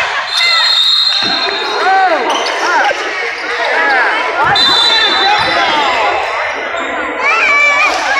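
Basketball shoes squeaking on a hardwood gym floor, many short squeaks one after another as players cut and stop, with a basketball bouncing now and then.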